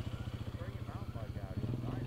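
Small ATV engine running with a rapid, even putter; about one and a half seconds in its note rises and fills out as it is given throttle.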